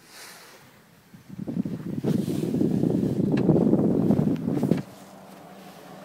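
Handling noise on a handheld phone microphone: loud rubbing and rumbling for about three and a half seconds as the phone is moved through the car's cabin, stopping abruptly. A faint steady hum lies underneath.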